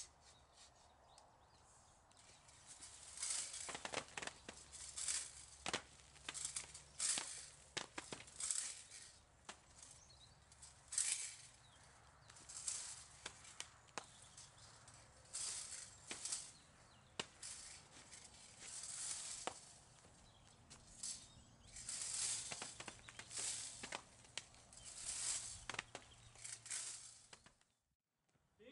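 Long-handled plastic olive rake combing through an olive tree's branches: repeated swishing rustles of leaves and twigs, roughly one stroke every second or so, stripping olives for the oil harvest.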